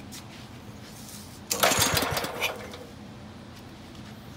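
Single-cylinder air-cooled Wisconsin engine being rope-started: one sharp pull on the wrap-around starter rope about a second and a half in. The engine turns over briefly through a few compression strokes and does not catch.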